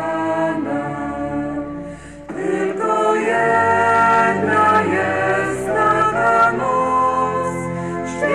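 Small church choir (schola) singing a slow sacred song in held notes. There is a brief pause about two seconds in, then the next phrase comes in louder.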